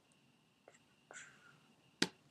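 Near silence: room tone, with two faint brief sounds, one about two-thirds of a second in and one about a second in.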